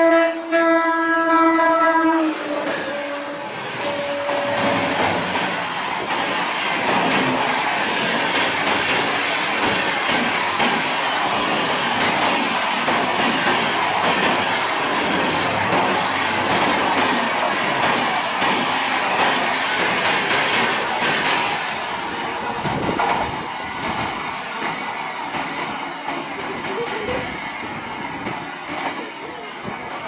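Electric locomotive's horn sounding a loud blast that cuts off about two seconds in. Then comes the rush and wheel clatter of the express's coaches running through the station at speed, dying down toward the end as the train draws away.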